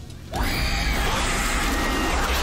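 Horror-film soundtrack of a creature attack: a sudden loud crash of music and attack effects starts about a third of a second in and holds as a dense wall of sound.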